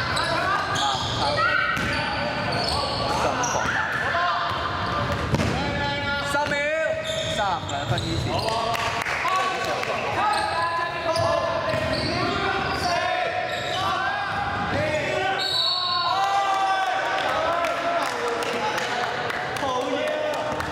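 A basketball bouncing on a hardwood court during a game, with players' voices calling out, all echoing in a large sports hall.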